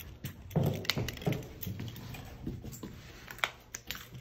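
Irregular clicks and taps as a Shiba Inu is tugged on its leash over an elevator's metal door track, its claws on the floor and the leash and harness hardware clinking, with a few heavier thumps in the first second or so.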